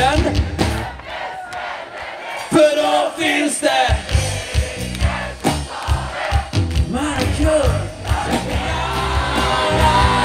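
Live band music with a crowd shouting and singing along. The bass drops away about a second in, leaving voices over a lighter beat, then the full beat comes back in the second half.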